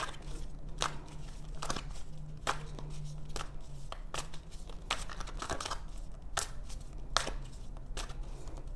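Tarot cards being shuffled by hand, a short papery snap about once a second, over a low steady hum.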